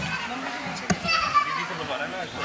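Children's voices chattering and calling out in a large hall, with a single sharp knock a little under a second in.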